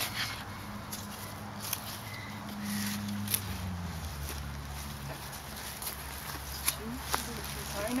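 A small plastic trowel digging and scraping in worm compost in a plastic tote, with a few sharp knocks, over a steady low hum that drops in pitch about four seconds in.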